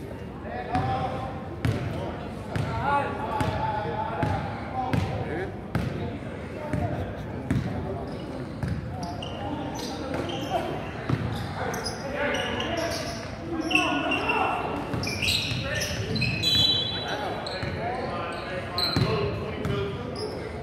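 Basketball bouncing on a hardwood gym floor amid indistinct voices of players and spectators, echoing in a large gym.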